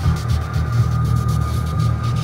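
Ambient electronic drone made from sculpted static and noise: a dense, steady low hum with a thin sustained high tone and a hiss above it.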